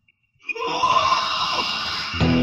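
A harsh black-metal shriek vocal that starts suddenly about half a second in, after a moment of near silence, and is held as one long scream.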